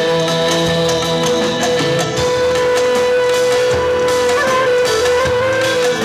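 Live Uzbek band music: a clarinet plays a long held note over hand drum, drum kit and keyboard accompaniment.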